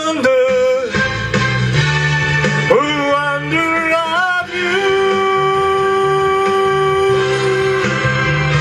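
A man sings into a microphone over electronic keyboard accompaniment: two short phrases, then one long held note lasting about three seconds before the end.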